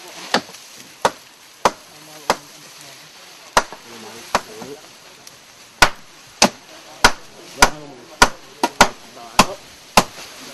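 A hand tool striking wood in a run of sharp blows, about one every half second, with two short pauses and the blows coming closer together near the end.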